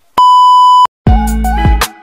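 A loud, steady test-tone beep of under a second, the reference tone that goes with colour bars. Then, about a second in, music with a bass line and plucked notes starts.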